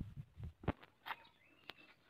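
Light scraping thuds and a few sharp little knocks as a sand-and-cement mix is scooped and packed into a wooden concrete-block mould.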